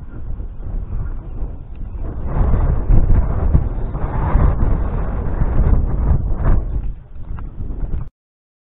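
Gusty wind buffeting an action camera's microphone: a heavy, uneven low rumble that grows louder about two seconds in and eases near the end.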